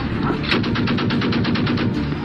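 Machine gun firing one sustained burst at about ten rounds a second. It starts about half a second in and stops just before the end, over a steady low rumble.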